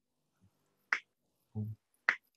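A single finger snap about a second in, one of a steady series of snaps keeping time to a spoken count.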